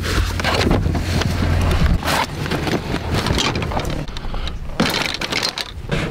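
Low rumble of a car's cabin for about two seconds, then it stops suddenly and gives way to clicks, knocks and rustling as the car door is opened and someone climbs out with the camera in hand.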